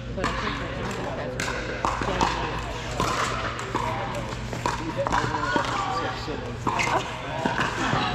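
Pickleball paddles striking a plastic ball in a rally: a string of sharp pops at irregular intervals, echoing in a large indoor hall.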